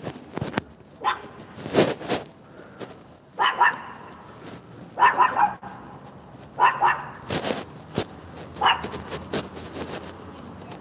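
Barking: five short barks spaced a second or two apart, with a few knocks and rustles between them.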